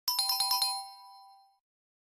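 Quiz sound effect: a quick run of about six bright, bell-like notes, then two tones ringing out and fading within about a second and a half, marking that the 10-second answer time has run out.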